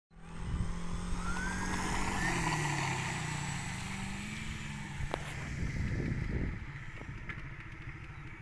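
RC P-38 model plane's twin propellers running up for take-off, with a whine that rises in pitch in the first couple of seconds. The motor sound holds steady through the take-off run, then grows fainter about six and a half seconds in as the plane climbs away.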